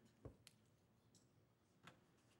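Near silence with room tone, broken by a soft low thump about a quarter second in and two faint sharp clicks, one about half a second in and one near the end.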